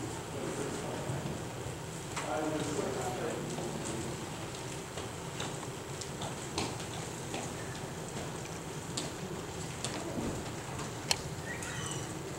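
Room sound of people moving about a church sanctuary: faint murmured voices, shuffling and scattered small clicks and knocks, with one sharp click about eleven seconds in.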